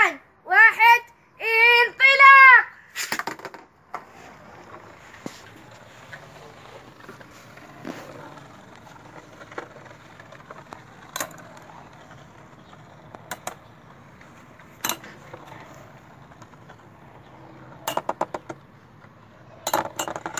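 Two Beyblade spinning tops whirring faintly and steadily on the floor of a plastic basin, with sharp clicks every few seconds as they strike each other and the basin wall. Children's excited shouts open the stretch.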